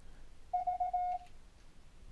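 A Morse code CW tone from FLDigi, looped back through Mumble and played on a computer speaker. One letter V (three short dits and a long dah) is keyed on a single steady pitch about half a second in.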